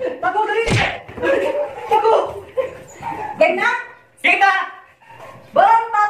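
Loud, excited voices through most of the clip, with a sharp thump just under a second in.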